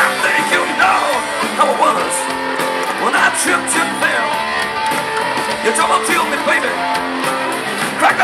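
Live rock trio playing a blues-rock song: electric guitar, bass guitar and drums, the guitar playing lines that bend up and down in pitch over a steady beat with cymbal hits.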